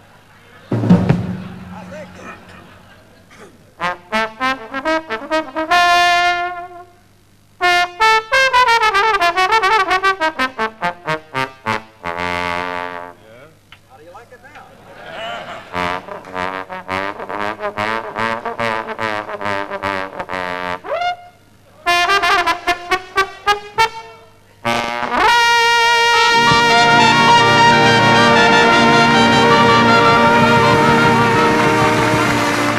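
Unaccompanied jazz trombone cadenza: phrases with sliding glides between notes and fast runs of short, tongued notes, broken by pauses. About 25 seconds in, the band comes in on a loud, sustained closing chord.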